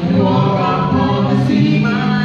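A small gospel choir of men and a woman singing a cappella in harmony, several voices holding sustained notes together.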